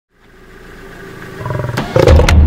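Male lion growling, a low pulsed rumble that grows steadily louder through the two seconds.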